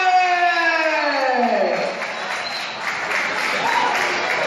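A long drawn-out call in one voice, held and then sliding down in pitch until it ends about two seconds in, followed by the crowd applauding and cheering.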